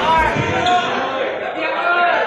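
A jostling crowd of reporters and camera operators, many voices talking and calling out over each other.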